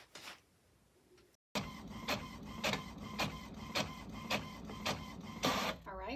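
HP Envy inkjet printer printing a sheet of sticker paper. It starts about a second and a half in: the print-head carriage sweeps back and forth about twice a second over the steady run of the feed motor.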